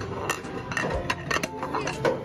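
Plastic sushi plates clinking and clattering in quick, uneven knocks as they are pushed into a table's plate-return slot.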